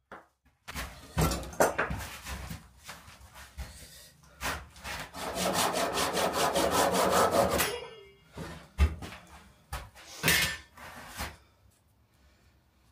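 Japanese-style pull saw crosscutting a block of beech: a few slow, uneven starting strokes, then a run of quick, even strokes for about three seconds. A few knocks follow near the end as the cut finishes.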